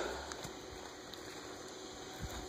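Faint, steady outdoor background hiss, with a brief low rumble right at the start.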